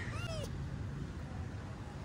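A cat meows once near the start, a short call that rises and then falls in pitch.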